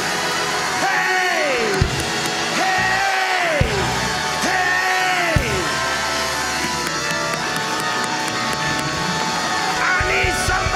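Loud church praise-break music during a congregational shout, with three deep downward swoops in pitch in the first half and voices shouting over it.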